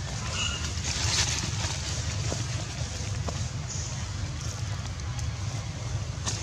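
Outdoor ambience: a steady low rumble under a light hiss, with a few faint clicks and one brief high chirp about half a second in.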